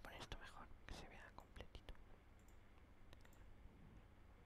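Near silence: faint muttered speech and a few soft clicks in the first two seconds, then only room tone with a couple of faint clicks.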